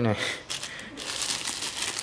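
Clear plastic bag wrapping crinkling as hands move plastic-wrapped wooden boxes, a dense run of small crackles from about half a second in.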